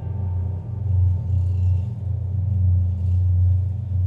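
Dark ambient music carried by a deep, low bass drone that swells and eases in slow waves.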